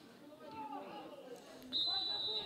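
Faint distant shouts from players on the pitch, then near the end a referee's whistle sounds a steady high blast, signalling a foul.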